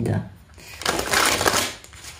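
Tarot cards riffle-shuffled on a cloth-covered table: about a second of rapid, crisp fluttering as the two halves of the deck are released into each other.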